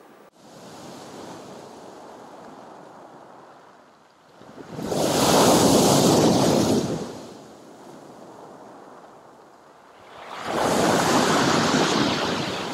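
Sea surf breaking on a pebble beach and against a concrete pier footing. Two large waves crash, one about five seconds in and another near the end, with a softer wash of surf between them.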